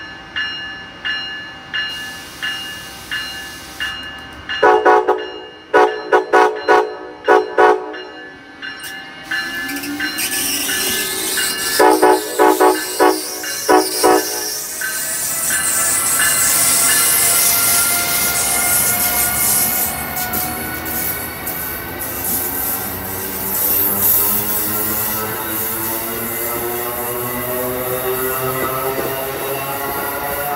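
Amtrak ACS-64 electric locomotive sounding its horn in two quick series of short blasts as it passes close by. After that comes the loud steady rush of the train's passenger cars going through at speed, with whining tones that slowly rise in pitch.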